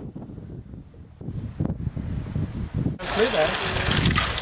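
Low wind rumble on the microphone. About three seconds in it gives way to water running and splashing in a stone Inca fountain channel, with a man's voice over it.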